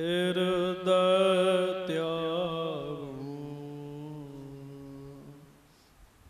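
Sikh devotional chanting: a voice holding one long, wavering sung note without clear words. The note steps down in pitch about two to three seconds in and fades out about five seconds in.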